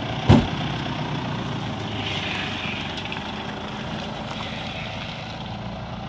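A sharp thump about a third of a second in, then the engine of a Ford 4x4 pickup truck running steadily as the truck drives forward through deep mud ruts.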